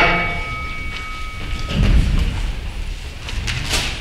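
The ring of a struck bell, like a boxing round bell, dying away over the first second and a half, then a dull thump about two seconds in and a short click near the end, from chairs and feet on the wooden stage floor as two performers sit down.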